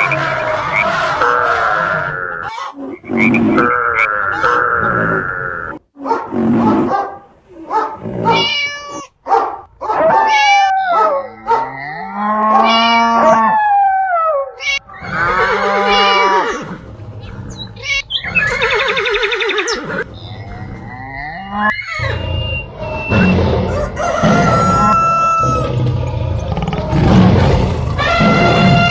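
A string of different animal calls, one after another, each lasting a second or two. Many of them rise and fall in pitch, and there are short gaps between them.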